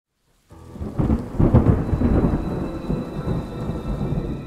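Thunder rumbling over steady rain, a storm sound effect. It starts about half a second in and is loudest around a second and a half, easing a little toward the end.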